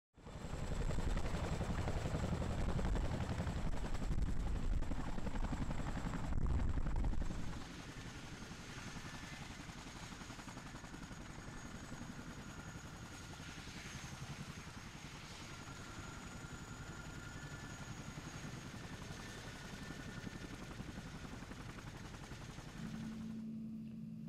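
CH-47 Chinook tandem-rotor helicopter running: a heavy, rhythmic rotor beat under a high steady turbine whine for about the first seven seconds, then a quieter, steady turbine and rotor noise for the rest.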